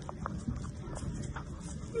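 Pug puppy's claws tapping on a wooden floor as it scurries about: a few light, irregular clicks.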